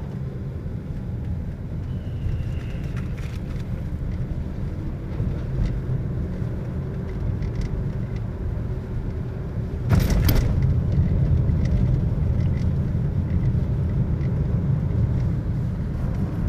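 Car interior road noise while driving: a steady low rumble of engine and tyres. A sharp knock comes about ten seconds in, and the rumble is louder after it.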